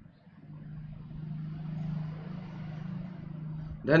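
Low hum of a passing road vehicle, swelling to a peak about halfway through and then easing off.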